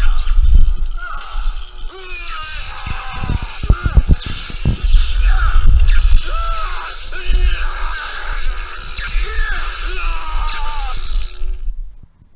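Electrified Corpse Halloween animatronic playing its sound track through its speaker: a heavy low buzzing rumble with sharp crackles and wavering, wailing cries. It cuts off abruptly near the end.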